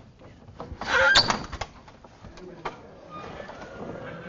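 Sliding blackboard panel being forced along its track: a loud squeak and scrape about a second in, then scattered knocks and a sharp click.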